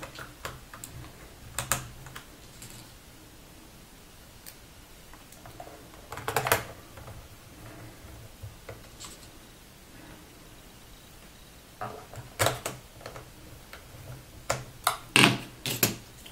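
Sparse small clicks and taps of a small Phillips screwdriver and screws being refitted and hands pressing on a laptop keyboard, with quiet stretches between. The loudest cluster comes about six seconds in, and several more come in the last few seconds.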